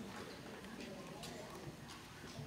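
Quiet indoor hall ambience: faint murmured voices with a few scattered light taps and clicks.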